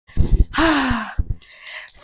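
A woman's breathy exhale with a falling voiced sigh, out of breath from dancing. There are a few dull low thumps near the start and again just after a second in.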